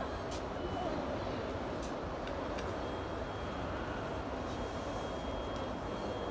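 Steady background hum of a large airport terminal hall, with indistinct distant voices and a few faint clicks.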